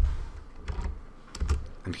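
Computer keyboard and mouse clicks at a desk: a few separate strokes with low thumps, one at the start, one under a second in and two more in the second half.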